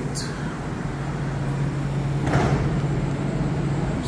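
Montreal Metro Azur train standing at the platform with a steady hum, and a short hiss about two seconds in as its sliding doors open.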